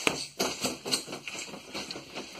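A few sharp knocks and thuds as a roundhouse kick is thrown and the feet plant again. The loudest knock comes right at the start, another about half a second in, with fainter ones after.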